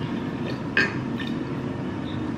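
Apple cider vinegar poured from a glass bottle into a small glass jar, a steady splashing pour of liquid into glass.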